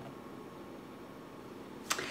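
Quiet room tone with a faint steady hum, and one brief sharp sound near the end.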